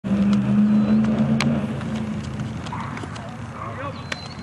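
A steady low vehicle hum that fades away over the first two seconds, with a sharp crack about a second and a half in and faint distant voices later.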